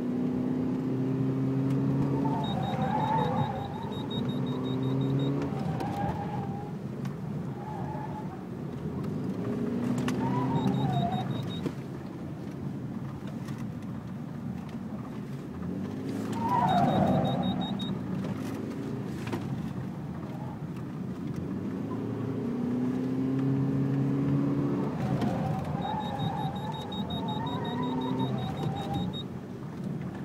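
Self-driving car driven fast around a tight course. The engine surges and eases off every few seconds, with wavering high squeals in the hard turns, the loudest about 17 seconds in. Bursts of rapid electronic ticking come and go over it.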